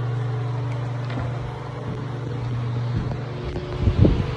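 Air-conditioner condensing unit running close by: a steady low compressor hum with fan noise.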